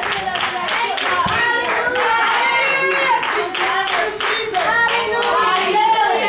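People clapping hands in a steady fast rhythm, about four claps a second, with voices calling out and singing over it.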